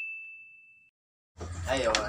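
The tail of a single bright bell-like ding, a sound effect on a title card, ringing on one tone and fading away within the first second, followed by a brief silence.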